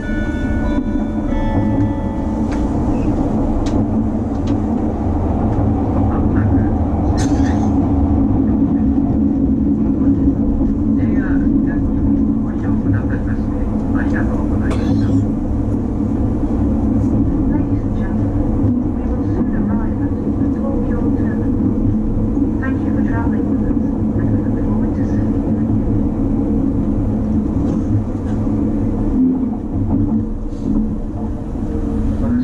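Interior running noise of an E257-series electric express train: a steady low rumble of wheels on rail and traction equipment heard from inside the carriage. A short run of pitched tones, a few notes, sounds right at the start.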